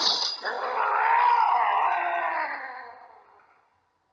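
A sudden hit, then a monstrous bird-like demon's long cry that wavers in pitch and fades out over about three seconds. The feathers scattering afterwards suggest it is the creature's death cry as it is cut down by the sword.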